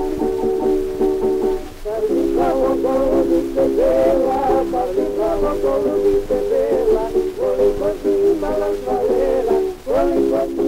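Tamburica orchestra playing a bećarac, heard from a 1907 acoustic Gramophone 78 rpm disc: a plucked-string melody over held chords, with a narrow, thin tone and surface hiss. The sound breaks briefly about two seconds in and again near the end.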